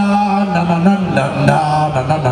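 Live hard-rock band playing, with long held sung notes over bass and guitar; the low notes step down in pitch partway through.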